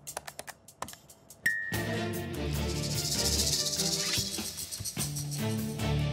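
Background music from the show's edit: sparse, quiet ticking clicks for about a second and a half, then a short high ding, and music with a bright, shimmering top comes in and runs on.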